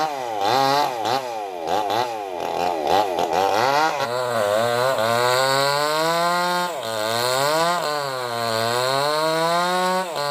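A two-stroke chainsaw running with its engine speed rising and falling. There are quick repeated revs in the first few seconds, then slower swells up and down.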